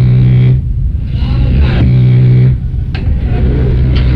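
Rock band playing live: loud low guitar and bass chords held about a second at a time with short breaks between, and a sharp drum hit about three seconds in.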